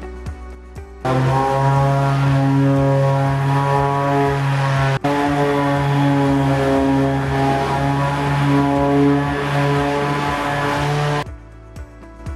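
Electric palm sander running with a steady buzzing hum as it works the rounded wooden edge of a table top. It starts abruptly about a second in, breaks off for an instant near the middle, and cuts off shortly before the end.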